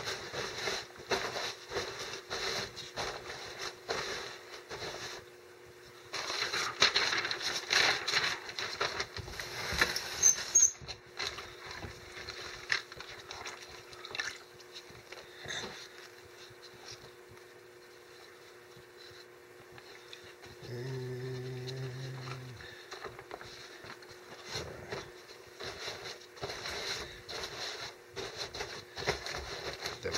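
Newspaper rustling and crinkling as gloved hands press and smooth dampened sheets over a crumpled-paper form, in quick irregular strokes. A short low hum sounds for about a second and a half about two-thirds of the way through.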